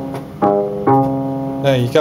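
Circuit-bent Lego electronic music toy playing its stored violin-like tone: the same low note repeated as held notes, a new one starting about half a second in and another just before one second in.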